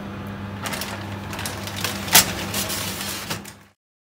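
A metal baking tray being pushed back into an electric oven on its rack: scattered scraping clicks and knocks with one sharp knock about two seconds in, over a steady low hum. The sound cuts off just before the end.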